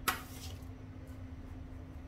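A single brief knock of a utensil against a bowl right at the start, then faint room tone with a steady low hum.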